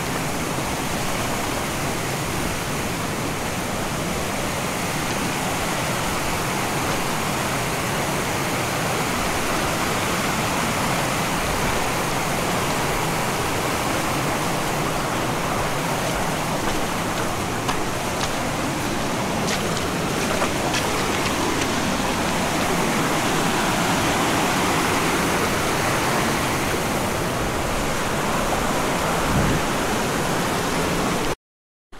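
Rushing stream cascading over rocks, a steady full rush of water. A few faint light clicks come about two-thirds of the way through.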